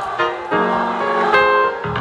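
Stage keyboard played live: a few sustained chords struck one after another, with no singing over them.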